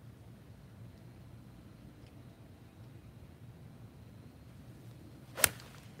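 A golf iron striking a ball on a range: one sharp click about five seconds in, the loudest thing heard. The contact is clean rather than fat.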